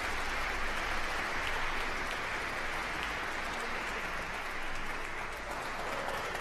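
Audience applauding, a steady clapping with no music under it.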